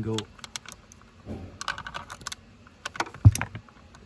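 Quick plastic clicks and rattles of hands working the clips of a 2010 Audi A3's steering column switch unit, with a short scrape in the middle and one heavier knock about three seconds in.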